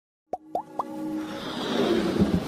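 Animated logo-intro sound effects: three quick upward-gliding plops about a quarter-second apart, then a rising whoosh that swells in loudness.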